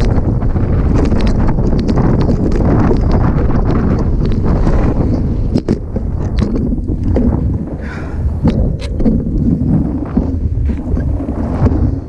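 Heavy wind buffeting the microphone of a camera on a hardtail mountain bike riding fast down a rough dirt track, with frequent sharp rattles and knocks from the bike over the bumps.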